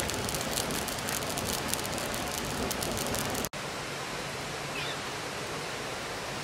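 Split-log wood fire crackling, with sharp pops, over a steady rushing hiss. The sound cuts out for an instant about three and a half seconds in, then the hiss goes on with fewer pops.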